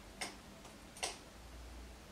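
Two faint, sharp clicks about a second apart over quiet room tone.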